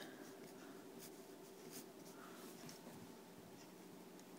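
Faint scratching of a pencil writing on paper, finishing a word and drawing a box around it.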